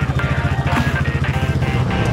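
Small Polaris RZR side-by-side's engine idling with a rapid, even putter, under background music.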